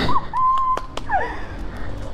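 A woman's high-pitched 'ooh' of amazement, held for about a second, then a quick falling glide in pitch.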